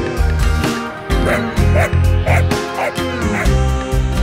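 A dog barking, a run of about five short barks roughly two a second, starting about a second in, over background music.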